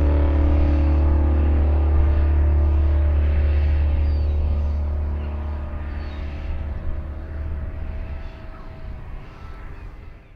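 Held final chord of closing music over a steady low drone, slowly fading out across the last few seconds.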